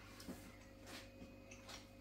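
Near silence with a few faint soft clicks of chewing, from a mouthful of pork belly being eaten, over a faint steady hum.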